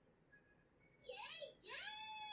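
A high-pitched anime character voice calling out twice about a second in, the second call long, rising and then falling in pitch.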